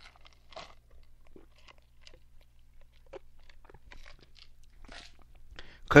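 Faint, scattered crunching and clicking noises close to the microphone, over a steady low hum.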